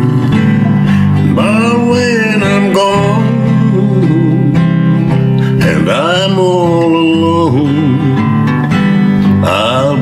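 A man singing a slow country song to his own strummed acoustic guitar: steady guitar chords throughout, with two long sung lines, one early and one past the middle.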